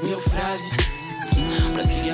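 Hip-hop music playing from a DJ mix, with a deep kick drum that drops in pitch on each stroke under held synth tones.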